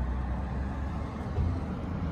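Steady low rumble of outdoor street background noise.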